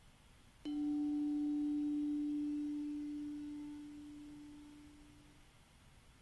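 A singing bowl struck once: one clear low tone rings out about half a second in and fades slowly over about five seconds. It marks the end of the silent mantra meditation.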